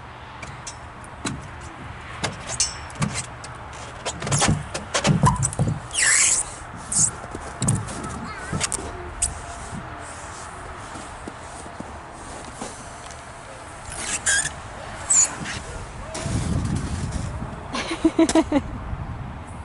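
Knocks and clicks on a playground structure, then a person sliding down a plastic tube slide, with squeaks of clothing rubbing on the plastic. Near the end comes a low rumble as he lands in the snow at the bottom.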